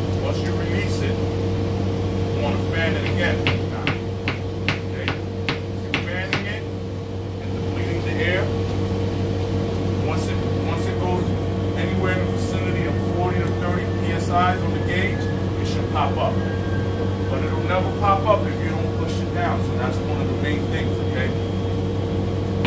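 Steady low hum of a parked city bus's running machinery, heard from inside the cabin, with a run of light clicks about three to seven seconds in.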